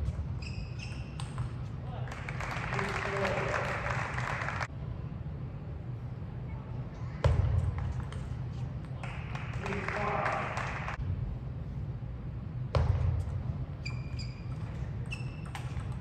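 Table tennis rallies: the ball pinging off bats and table in quick sharp ticks, each rally followed by a burst of cheering and voices from the hall, over a steady low hum.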